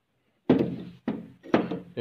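Three thunks about half a second apart, the first the loudest, as steel motorcycle connecting-rod assemblies are set down on a table.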